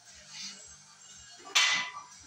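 Loaded barbell set down at the bottom of a deadlift rep, its plates hitting the floor with one sharp clank about one and a half seconds in. Faint background music throughout.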